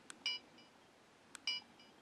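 Digital camera's playback button pressed twice, about a second apart, each press a small click followed by a short electronic beep as the display steps to the next picture.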